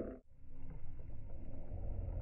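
Slowed-down lakeside ambience from a slow-motion recording, heard as a steady low rumble, after a brief dropout in the sound just after the start.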